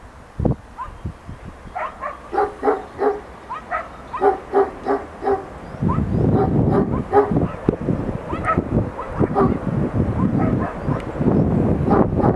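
A dog barking repeatedly in short yaps, about three a second. About halfway through, a low rumbling noise comes in and carries on under further barks.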